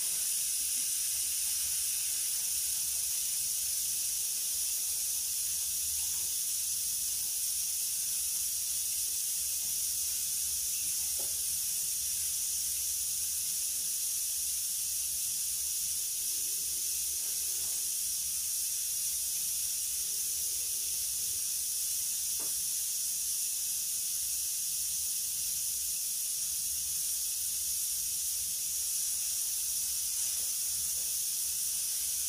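Aluminium stovetop pressure cooker hissing steadily as steam escapes at its valve while it cooks under pressure.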